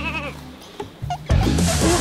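A comic goat-bleat sound effect with a wavering pitch fades out in the first half second. About a second and a half in, a loud music sting with sweeping tones starts, a scene-transition effect.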